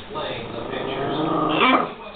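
Chihuahua growling in play: one long growl that grows louder, ending in a short, higher cry that falls in pitch near the end.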